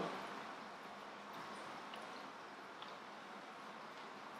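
Quiet, steady room noise with a few faint small ticks.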